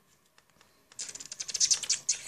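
A small dog licking a puppy at close range: a quick run of crisp, wet clicks that starts about a second in and lasts about a second, after a near-quiet start.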